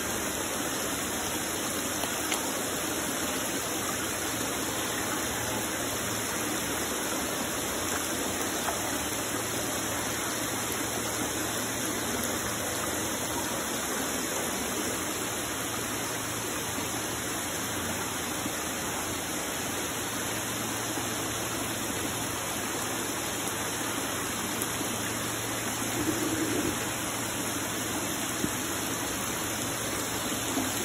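Steady rushing and splashing of churning water in round plastic fish-rearing tubs full of grouper fingerlings, with a few sharper splashes near the end.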